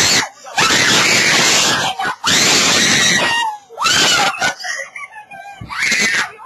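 Young people screaming in disgust: two loud screams of about a second each, then shorter shrieks.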